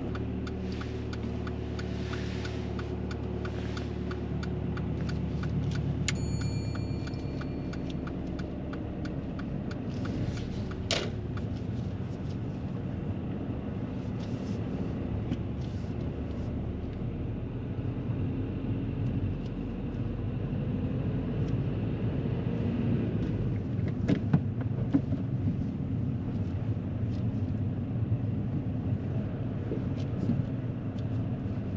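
Inside a manual Mercedes-Benz car: the engine is running as it pulls away from the kerb, then a steady engine and road hum as it drives slowly along a street. A brief high electronic tone sounds about six seconds in, and a sharp click comes near eleven seconds.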